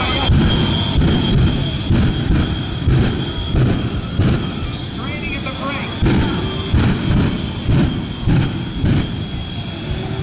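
Shockwave jet truck's three Pratt & Whitney J34 jet engines running with afterburner: a steady high whine under a heavy rumble that surges in repeated blasts, roughly every two-thirds of a second.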